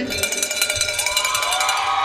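A cowbell rung rapidly and without a break, the Mississippi State fans' traditional rallying noise, greeting the announcement of Mississippi State University.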